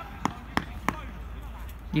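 Four sharp knocks in the first second, coming about three a second, over a low steady outdoor background.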